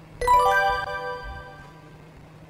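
A short chime jingle: a quick run of bright, bell-like notes about a quarter second in, ringing and fading away over about a second.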